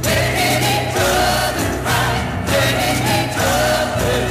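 A 1965 pop ballad single playing: a backing vocal chorus sings sustained lines over a steady bass and orchestral arrangement.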